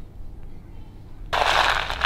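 Dry rabbit food pellets rustling and rattling in a plastic tub as a plastic spork digs into them. The sound starts suddenly a little over a second in.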